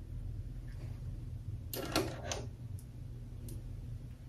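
Light handling sounds of plastic mascara tubes and their packaging: a brief rustle about two seconds in and a few faint clicks, over a low steady hum.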